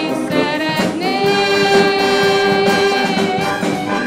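A wind band accompanying singing voices, a children's choir with a solo singer, in a pop-song arrangement. One long note is held from about a second in until about three seconds.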